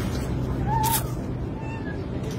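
Young kitten mewing: one short high mew about a second in, ending with a sharp click, and a fainter mew near the end, over a steady low hum.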